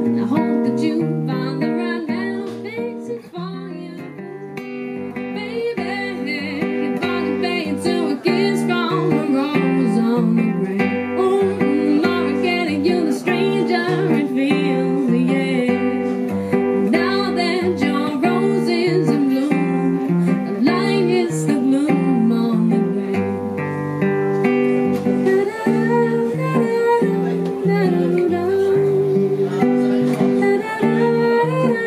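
Live acoustic guitar with picked bass notes and chords, and a woman's singing voice carrying the melody over it. The music drops quieter about three seconds in, then builds back up and stays full.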